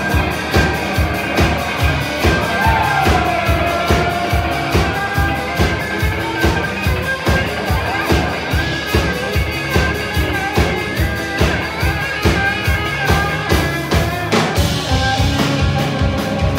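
Live band playing an instrumental passage: electric guitar soloing over a steady fast drum beat and electric bass, the guitar taking the part usually played on fiddle, with a bent note about two and a half seconds in.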